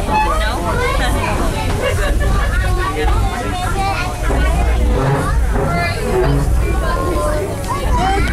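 Indistinct chatter of several passengers in a railway carriage, over the low, steady rumble of the steam train's carriage running along the track.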